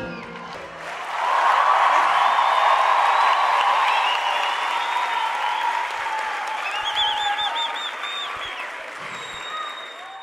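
Concert audience applauding and cheering as the song ends: the music stops at the start, and the clapping swells about a second in, then slowly fades. A high wavering cry rises over the applause around seven seconds in.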